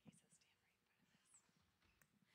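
Near silence, with faint murmured voices away from the microphone.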